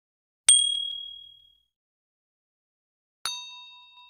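Two bright ding sound effects from a subscribe-button animation, about three seconds apart, each ringing out and fading over about a second. The first is a high, thin ding; the second is a lower, fuller chime with several tones.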